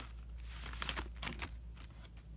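Crinkling rustles of trading-card pack wrappers and cards being handled, a quick run of short rustles that thins out after about a second and a half.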